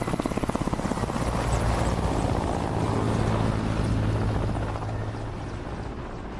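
Helicopter running, a rapid beat of rotor blades over a steady engine hum; the blade beat is clearest in the first second or two, then settles into the steady hum.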